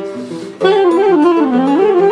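Soprano saxophone playing a bending, wavering melodic line over acoustic guitar accompaniment. After a brief quieter moment the sax comes in about half a second in, its line sliding down and then back up near the end.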